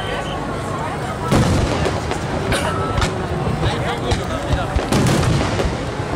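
Aerial firework shells launching and bursting in a dense barrage: a run of booms and bangs, the loudest about a second in and again around five seconds in.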